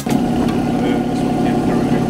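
Mini excavator's diesel engine idling steadily.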